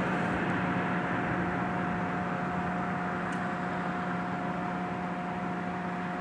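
Firefighting helicopter heard at a distance as a steady rushing noise with a constant hum, while it hovers and drops water on a brush fire.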